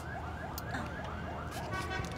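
A siren in fast yelp mode: rising sweeps of pitch repeating about four times a second at a moderate level.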